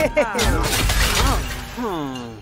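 Cartoon sound effect of large ice cubes crashing down and shattering on a road, with sharp impacts in the first half second, followed by a character's wordless cries.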